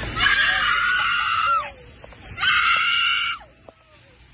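A woman screaming twice in distress: a long, high scream of about a second and a half, then a shorter one a moment later.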